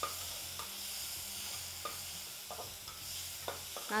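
Onion, tomato and chillies sizzling steadily in hot oil in an aluminium pressure-cooker pan, while a slotted metal spatula stirs and scrapes against the pan with several short knocks.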